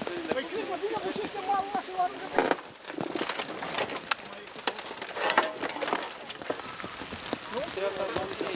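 Indistinct voices, then a run of sharp knocks, cracks and scrapes from a crashed car's crumpled body as people push it over from its roof back onto its wheels.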